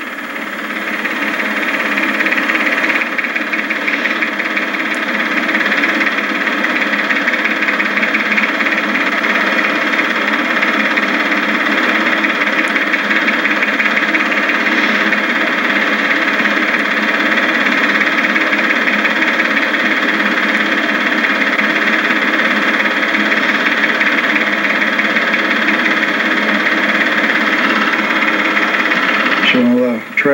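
Super 8 film projector running: a steady mechanical whir with a fast, fine clatter, rising in over the first couple of seconds and cutting off suddenly at the end.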